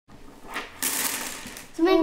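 A bundle of wooden mikado (pick-up) sticks let go and clattering as they fall and scatter across a wooden table, a loud rattle lasting under a second. A child starts speaking near the end.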